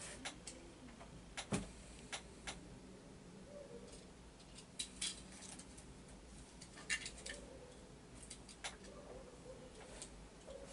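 Faint, scattered small clicks and light knocks, about a dozen over several seconds, irregularly spaced, over quiet room tone.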